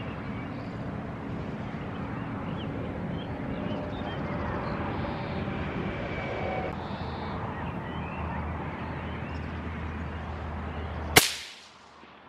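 A single rifle shot from a CZ527 in .17 Hornet, sharp and loud, about eleven seconds in. Before it, a steady outdoor background with faint bird chirps.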